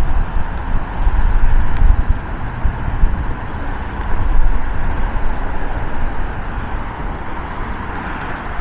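Steady roar of freeway traffic from the busy lanes below, with a heavy, uneven low rumble that is strongest in the first half and eases toward the end.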